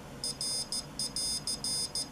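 Piezo buzzer on a homemade electronic Morse keyer beeping a high-pitched Morse code message of short and long beeps at switch-on. It is the keyer's error signal, given because the dot and dash keys were not both held while switching on.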